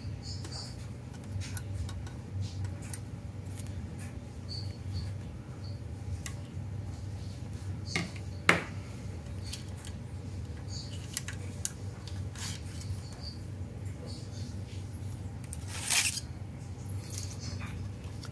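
Scattered light clicks and taps of a diecast model car being handled, the sharpest click about eight and a half seconds in and a small cluster near the end, over a steady low hum.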